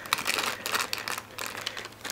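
Clear plastic bag around a boxed scale-model truck crinkling as it is turned in the hands, a dense run of small irregular crackles.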